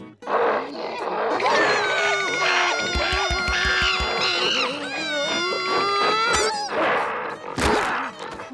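Two cartoon characters scream in fright, a long held scream lasting most of the clip, over music with a quick run of low thumps midway. Near the end come rough, breathy gorilla roars.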